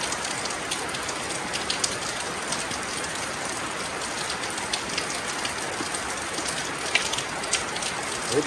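Steady rain falling, a continuous hiss with scattered sharp ticks of drops striking nearby surfaces, one louder tick about seven seconds in.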